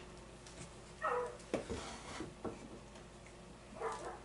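A dog in another room gives a short yelp, falling in pitch, about a second in, and another brief call near the end: she is alerting on what she takes for a mouse. A few light knocks sound between the calls.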